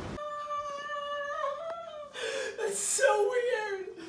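A person's voice in a small room making a high, drawn-out whimpering note for about two seconds, then wavering, breathy vocal sounds without words.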